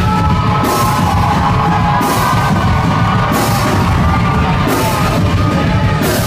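Loud rock music with a full drum kit, running steadily.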